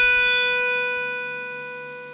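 A single sustained note on a Stratocaster-style electric guitar: the B at the 7th fret of the high E string, hammered on by the left hand as the last note of a tapping figure, ringing and fading steadily.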